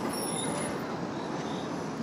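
Steady outdoor background noise, fairly even in level, with a few faint, thin high-pitched tones in the first half.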